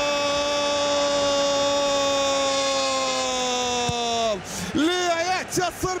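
Football commentator's long, drawn-out goal cry of "goool", one held note sinking slowly in pitch, which breaks off about four seconds in into fast, excited shouted commentary.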